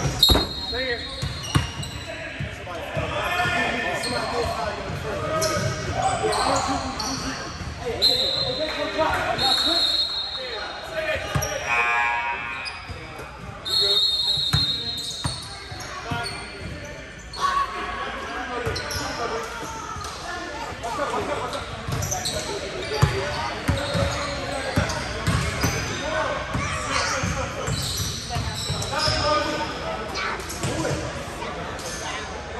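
Basketball game noise in a large gym hall: a ball bouncing on the hardwood court, short high sneaker squeaks and players' voices, all echoing.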